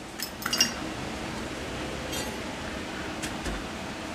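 Steel C-channel and a trailer coupler clinking against each other as they are set together on a platform scale: a few quick clinks, then a short metallic ring about two seconds in.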